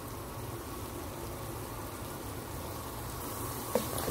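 Minced garlic and chopped jalapeño sizzling steadily in melted butter in a pot. Near the end a spatula begins stirring, with a brief knock against the pot.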